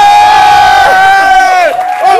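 Two men yelling in celebration, one holding a single long high-pitched yell that drops off near the end while the other shouts beneath it.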